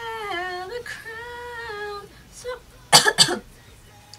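A woman with a head cold sings held notes for about two seconds, then coughs twice sharply, about three seconds in.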